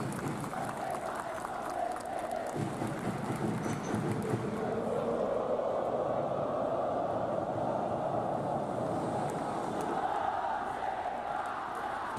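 Large football crowd of Persebaya supporters chanting in unison: a steady wash of massed voices that grows fuller from about five seconds in.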